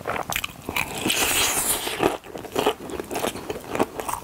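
Close-miked biting and crunching into a crispy fried chicken drumstick: a dense run of crackling crunches as the coating breaks and the meat is pulled off the bone.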